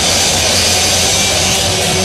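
Live punk band playing loud, heavily distorted electric guitar and bass in a dense, unbroken wall of sound.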